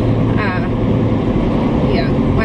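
Steady low rumble of a car's engine and tyres on the road, heard from inside the moving car's cabin. A brief voice sound comes about half a second in.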